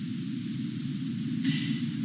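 Steady background hiss and low rumble of the recording's noise floor, with no distinct events.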